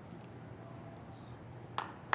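Faint room tone with a low steady hum, and one short sharp click near the end.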